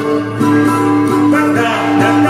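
Song with acoustic guitar accompaniment: sustained plucked chords throughout, with a voice singing a wavering line from about two-thirds of the way in.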